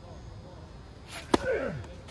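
Tennis racket striking the ball once, a sharp, loud pop about one and a third seconds in, followed straight away by a short grunt that falls in pitch.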